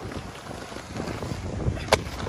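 Inline skate wheels rolling on smooth concrete, a steady rumble with wind noise on the microphone. A single sharp click comes just before the end.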